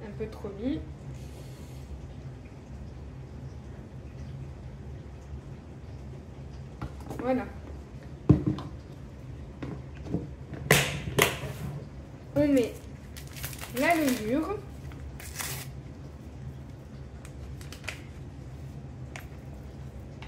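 A low steady hum, with a woman's voice speaking briefly a few times. A sharp knock comes about eight seconds in, and a few short clattering noises follow.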